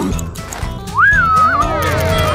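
Cartoon background music, with a horse-whinny sound effect about a second in: a high cry that rises sharply, then wavers down.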